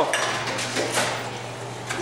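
Bottle-return (reverse vending) machine taking in a plastic bottle: a sharp click as it is fed in, then light clatter and a few knocks as the machine draws it inside.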